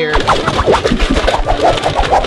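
Wrapping paper crinkling and rustling as a gift is folded and wrapped, over background music.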